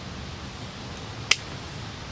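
Pruning shears snipping once through a willow cutting's stem a little over a second in: a single sharp click.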